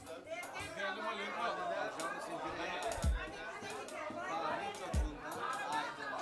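Chatter of many guests talking at once in a crowded hall, with two brief low thumps about three and five seconds in.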